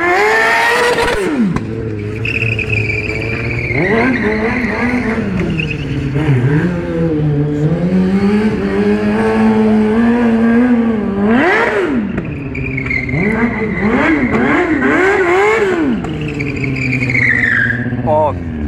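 Stunt motorcycle's engine revving and dropping back over and over as the rider works the throttle through tricks, with a steadier held throttle through a wheelie in the middle and quick repeated rev blips near the end.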